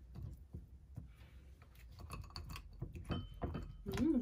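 Faint, scattered clicks and clinks of a metal spoon and ice cubes against a ceramic bowl as mango pieces are dropped into a fruit bowl and stirred.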